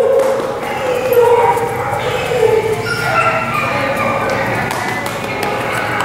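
A dog vocalizing in a run of short, pitched calls that rise and fall, mixed with a person's voice.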